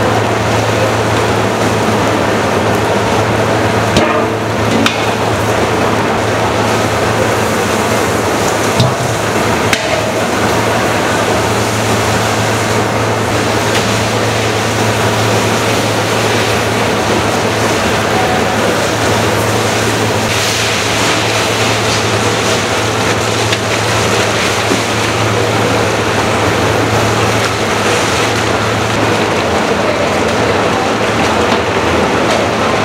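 Industrial stir-fry kettle with a motor-driven scraper arm running: a steady machine hum under a dense, even hiss as the ingredients are swept around the hot steel pan, with a couple of brief knocks.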